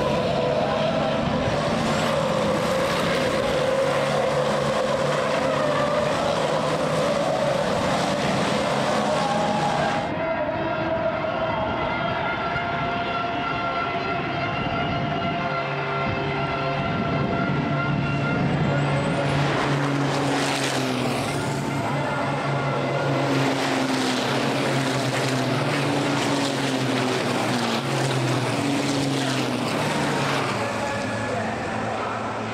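Several racing trucks' turbo-diesel engines running hard as the pack passes, their pitch rising and falling with throttle and gear changes. The sound changes abruptly about ten seconds in.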